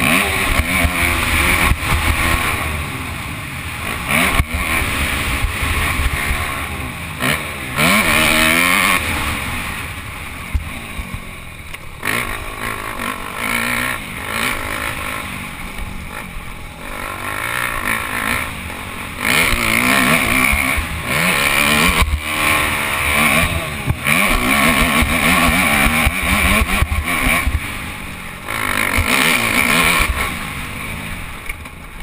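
Motocross dirt bike engine heard from the rider's helmet, revving hard and rising in pitch, then falling off as the throttle is closed, many times over as it works through the gears on the track. Wind rumbles on the microphone under the engine.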